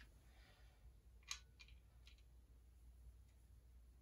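Near silence: a low steady hum and two faint clicks a little over a second in, from handling a guitar cable and pedal while plugging them in.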